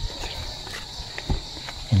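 Footsteps on a dry dirt path, a few soft thumps and light scuffs, over a steady high drone of insects.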